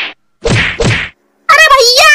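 Two whack sound effects about half a second apart, each a hard hit with a deep low end. Near the end a high-pitched, child-like voice starts up.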